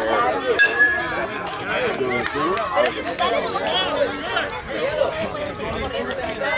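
Several voices talking at once, overlapping chatter with no single clear speaker.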